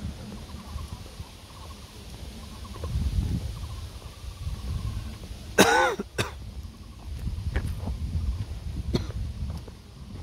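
A single loud, short cough near the microphone a little before six seconds in, over a low, uneven rumble on the microphone.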